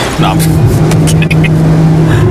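Sports car engine running hard at speed, holding a steady, even pitch, with a laugh over it.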